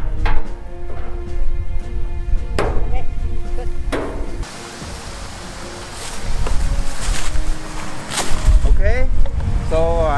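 Background music with steady held tones and a few sharp knocks, quieter for a moment in the middle; a man's voice starts near the end.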